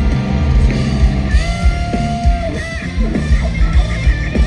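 Live progressive-metal band playing through a festival PA: distorted electric guitars over bass and drums, with a long held high note from about a second and a half in. It is loud, with crowd-position room sound from the audience.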